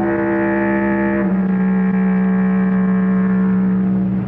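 Closing theme music of held, low, horn-like notes, the low note stepping down slightly about a second in.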